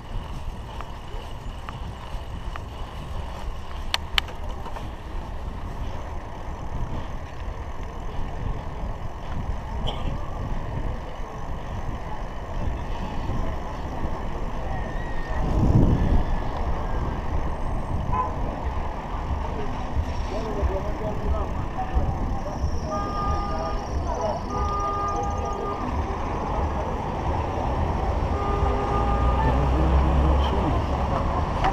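Wind rumble on a bicycle-mounted action camera's microphone while riding, with one strong gust about halfway through. Near the end, road traffic and a few short steady tones come in and the sound grows louder as the bike reaches vehicles.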